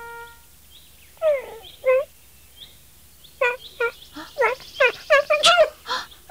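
High, squeaky chick-like chirps from a baby-bird puppet: two short squeaks a little over a second in, then a quick run of squeaks from about three and a half seconds on. A held musical note dies away at the very start.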